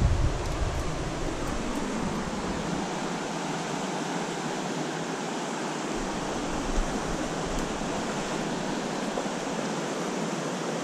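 Steady rushing of a stream flowing over shallow riffles. There is low wind rumble on the microphone in the first couple of seconds.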